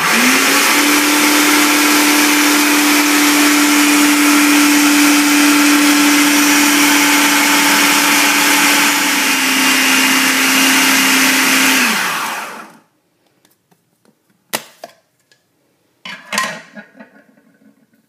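Food processor motor running at full speed, blending tahini, honey, agave syrup and coconut oil into a sticky paste: a loud, steady whine whose pitch dips slightly about nine seconds in. It is switched off about twelve seconds in and winds down, followed by a couple of sharp clicks.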